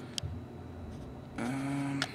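Handling noise from a video camera being adjusted: a sharp click, then low rustling. Near the end comes a short, steady pitched hum lasting about half a second.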